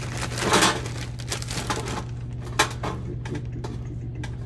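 Frozen pizza rolls tumbling out of a crinkling plastic bag and clicking against a metal baking sheet as they are spread out by hand, in irregular rustles and short sharp clicks. A steady low hum runs underneath.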